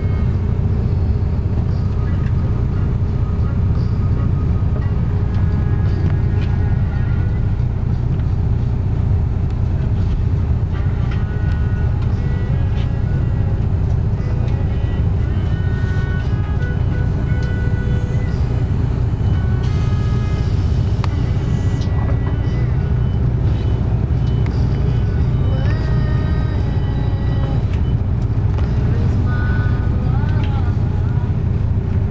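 Steady low engine rumble heard from inside a vehicle's cabin, with faint voices and music underneath.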